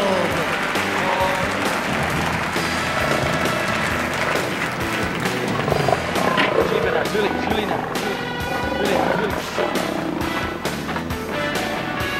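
Circus band music playing under a big-cage lion act, with voices over it.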